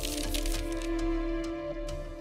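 A page-flipping sound effect: a brief rustling flurry of paper in the first second. It plays over background music of held, sustained tones.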